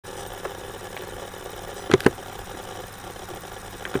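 Steady mechanical hum of a running laptop, picked up close by, with a sharp double click from a mouse button, press and release, about two seconds in, the loudest sound, and another double click at the very end.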